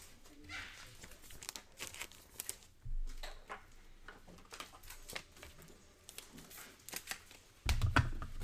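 Faint rustling, crinkling and light clicks of plastic as a trading card is slipped into a sleeve and a rigid top loader, with a low thump about three seconds in and louder handling of cards near the end.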